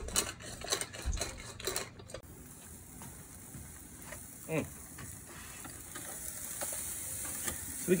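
A hand pepper mill grinding in quick clicking turns for about two seconds, then ribeye steaks searing over a charcoal kettle grill with a steady sizzle.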